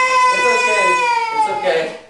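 A baby crying: one long wail that holds its pitch, then slides down and breaks off near the end.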